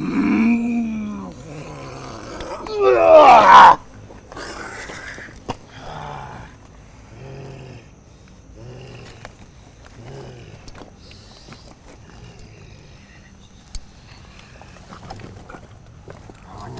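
A man in a trance-like state crying out without words: a falling moan at the start, then one loud cry about three seconds in with its pitch sweeping up and down, followed by shorter, quieter groans.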